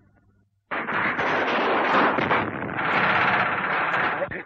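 Battle sound effects on a 1930s film soundtrack: dense, rapid machine-gun fire mixed with gunshots. It starts suddenly under a second in, after a brief near silence.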